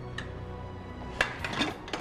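A stainless steel cooker lid lifted off its pot, with a few short metallic clinks, the sharpest a little past halfway. Quiet background music plays throughout.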